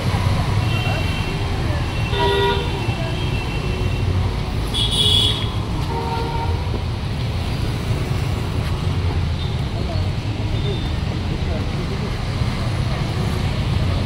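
Busy street traffic with vehicle horns tooting: a horn sounds about two seconds in and again about six seconds in, over a steady low traffic rumble.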